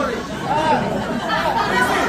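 Speech only: voices talking over one another.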